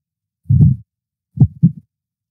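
A man's short, low chuckles: one burst about half a second in and two quick ones about a second and a half in, with dead silence between from a noise-gated microphone.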